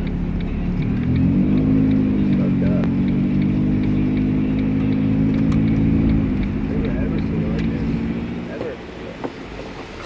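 Car engine heard from inside the cabin, rising in pitch as the car pulls away, then running at a steady drone for about five seconds before easing off, with tyre noise on wet pavement underneath.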